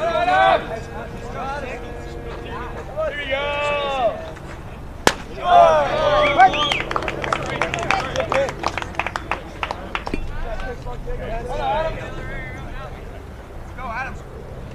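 Ballpark sounds: shouting voices off and on, a single sharp pop about five seconds in as the pitch lands in the catcher's mitt for a strike, then a run of quick claps for a few seconds.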